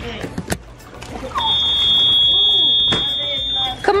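A steady, high-pitched electronic beep: one unbroken tone about two and a half seconds long, starting about one and a half seconds in, with a sharp click partway through.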